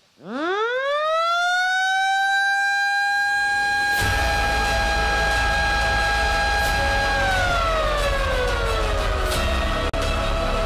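A siren winds up to a steady high wail within about a second and a half, holds, and begins winding down about seven seconds in. It is sounded by the button press that marks the plant's official opening. Music comes in underneath about four seconds in.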